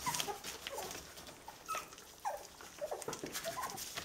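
Young schnauzer puppies whimpering in many short, overlapping squeaks that slide up and down in pitch, with quick clicks and rustling from eating and paws on newspaper throughout.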